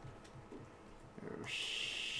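Faint room noise, then about one and a half seconds in a man's voice makes a drawn-out "sh" hiss, the fricative of "AeroShell" spoken slowly.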